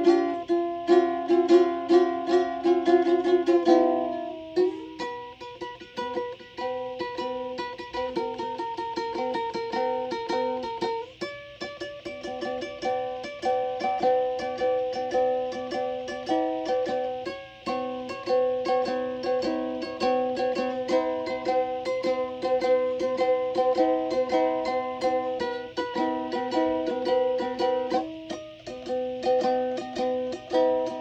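Music played on a plucked string instrument in the ukulele or guitar family, with quick picked notes ringing over held chords.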